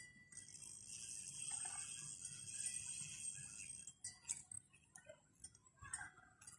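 Faint, high-pitched insect buzz that holds steady for about three and a half seconds, then stops, with a few sharp ticks around it.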